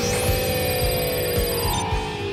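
Cartoon power-up sound effect for a monster as its attack points climb. A steady electronic hum slowly falls in pitch, and thin high tones ring above it, stopping just before the end, over background music.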